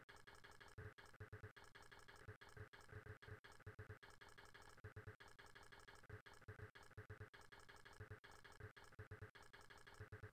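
Faint steady buzz of a Central Machinery ultrasonic cleaner running its cleaning cycle, agitating the soapy solution in the tank.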